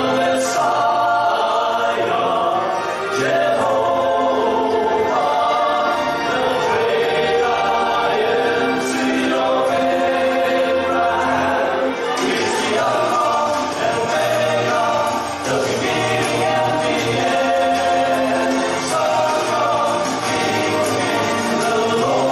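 A male vocal ensemble of seven voices singing a gospel song together in harmony, held notes over several pitches at once, amplified through microphones.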